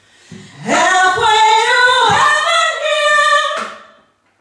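Two women singing one long phrase together through microphones, without accompaniment. The phrase starts just under a second in, holds its notes, and fades out shortly before the end.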